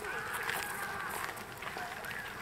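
Voices of people nearby, one high voice drawn out for about a second near the start, over footsteps on a gravel path.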